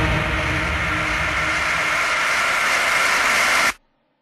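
A steady, dense hiss-like noise effect with faint held tones, played in a trance mix while the beat is dropped out. It cuts off abruptly shortly before the end, leaving a moment of silence.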